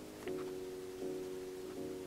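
Quiet background music: soft held chords that change about every three-quarters of a second.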